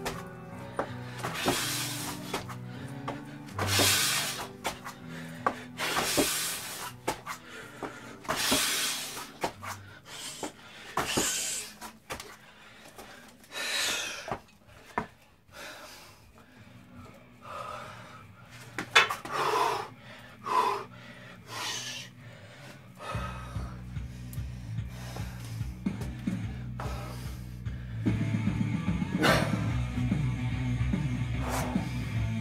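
A man's hard breathing during burpees and body rows, with a loud exhale roughly every two seconds and a few strained grunts about two-thirds of the way in. Background music plays under it and grows louder near the end.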